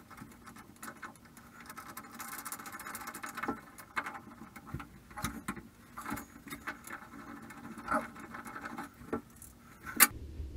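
Hand tools clicking and scraping on an antique (about 80-year-old) brass shower valve stem as it is worked loose and unscrewed from the wall, with a rough squeaky grinding stretch about two to three seconds in. Scattered metal clicks throughout and one sharp knock at the very end.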